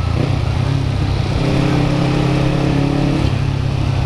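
Kawasaki Ninja 250's parallel-twin engine running at a steady, even pace while the bike is ridden, with wind and traffic noise around it.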